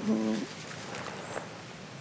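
A woman's short, flat hesitation sound, "eh", at the start. It is followed by quiet studio room tone with faint handling of paper sheets.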